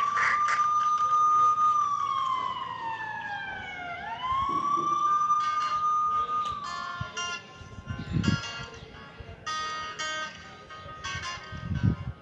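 Wailing siren in the soundtrack, going through two slow cycles of rising, holding high and falling. About seven seconds in, music with plucked guitar takes over, with a low thump twice.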